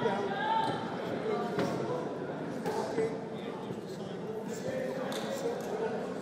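Boxing crowd talking and calling out in a large echoing hall, with a few faint thuds.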